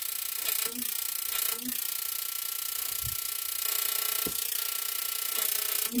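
High-voltage electrical discharge driving plasma through a clear plastic tube: a steady, high electrical buzz with a handful of sharp crackles scattered through it.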